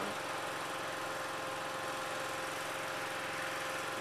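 A steady mechanical drone like an idling engine, with a constant pitched whine on top, unchanging throughout.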